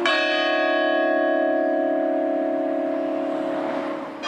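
Orthodox church bell tolling slowly as a mourning knell. A single stroke at the start rings out with many overtones, and its deep hum carries on, slowly fading, until the next stroke.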